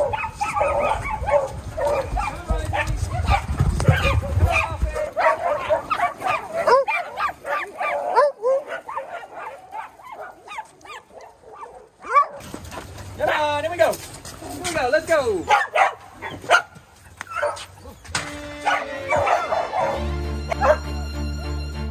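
A pack of dogs barking, yipping and whining in many short overlapping calls, with a brief lull about halfway through.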